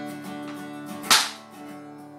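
Acoustic guitar chords ringing, with one loud, sharp percussive slap about a second in.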